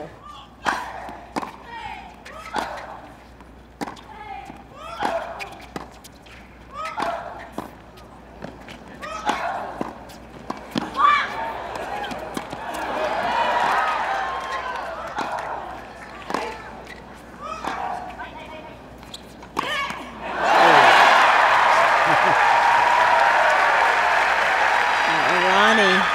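A doubles rally of tennis balls struck by rackets, sharp hits about once a second, several followed by a player's short grunt, with crowd murmur rising partway through. About twenty seconds in the point ends and the crowd breaks into loud cheering and applause.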